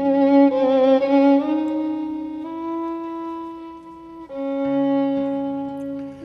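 Tango recording: a solo violin plays a slow melody of long held notes with wide vibrato over sparse guitar accompaniment.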